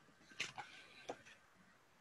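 Near silence, broken by two faint, short noises about half a second and about a second in.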